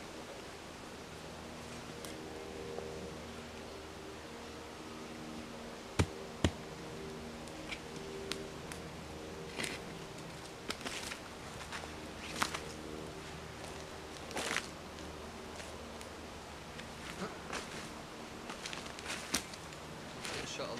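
Small shovel scraping and chopping into damp woodland soil as a burnt-out fire pit is filled in: scattered scrapes and soft thuds, with two sharp knocks about six seconds in. A faint steady buzzing drone runs underneath.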